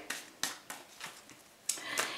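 A quiet pause holding a few faint, short clicks in the first second, then a soft rushing noise near the end.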